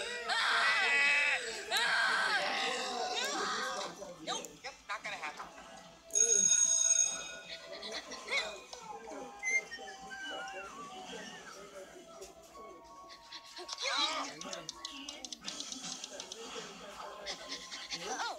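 Cartoon soundtrack played from a TV speaker: a character's wordless vocal sounds over background music, with a loud ringing sound about six seconds in lasting about a second and a half.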